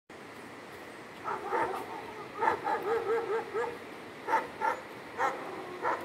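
A dog barking in short, pitched barks: a couple, then a quick run of about six, then four more spaced out.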